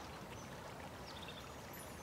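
Faint, steady running-water ambience, like a quiet trickling stream.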